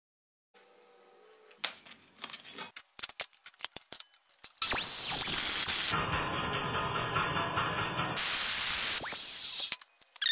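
Metal-cutting chop saw (an Evolution metal saw) running and cutting through 3/16-inch steel flat bar, a loud steady cutting noise for about five seconds in the second half. Before it come a few light clicks and taps.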